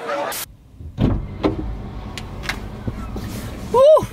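Inside a car cabin: a steady low rumble with a few light clicks and knocks. Near the end a short hummed vocal sound rises and falls in pitch.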